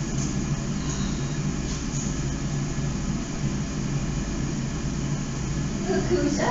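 A steady low mechanical hum with a deep rumble beneath it, unchanging throughout.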